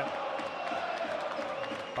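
Basketball arena crowd chanting and cheering, a steady mass of voices that fills the hall.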